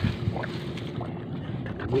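Wind rumbling on a phone microphone, with light splashes and sloshing of someone wading through shallow seawater among seagrass.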